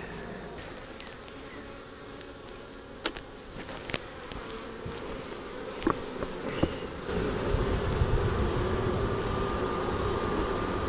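Honey bees buzzing around an open hive in a steady hum that grows louder about seven seconds in. A few sharp knocks come from the wooden hive boxes and frames as they are handled.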